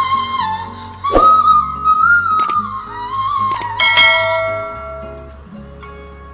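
A woman singing one very high held note with small slides in pitch over a backing track. It is a high-note challenge attempt, and the note fades out about four and a half seconds in.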